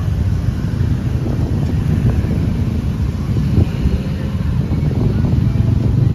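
Loud, steady low rumble of wind buffeting a handheld microphone outdoors.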